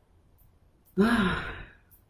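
A woman's voiced sigh about a second in, its pitch rising and then falling as it trails off.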